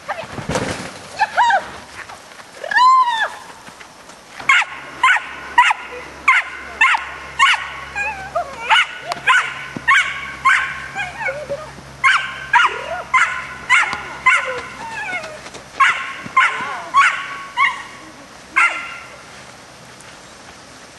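A dog barking in a fast repeated series, about two short barks a second, with a couple of brief pauses. A single rising-and-falling yelp comes just before the barking starts.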